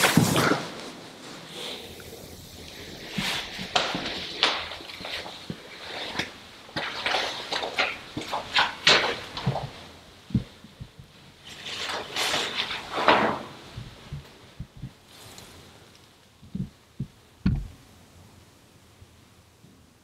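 Footsteps on a concrete tunnel floor with the rustle of clothing and gear, irregular and fairly quiet, dying away near the end with a few soft thuds.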